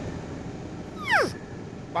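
A single short whimper, sliding steeply down in pitch about a second in, over the steady low rumble of a car interior.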